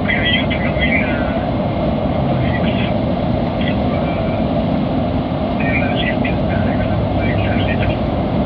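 Steady vehicle cabin noise: a constant low rumble and hiss that does not change in pitch. A faint voice talks through a phone held at the ear.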